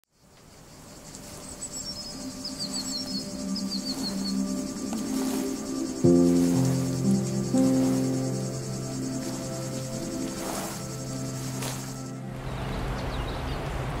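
Ambient music of held tones fading in, with a deeper chord coming in sharply about six seconds in. Under it runs a steady, high insect chirring that cuts off about twelve seconds in, with a few short high chirps near the start.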